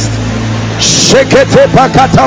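A man's voice praying aloud in quick, rising-and-falling syllables that start about a second in, after a short hiss. Under it runs a steady low hum of sustained background tones.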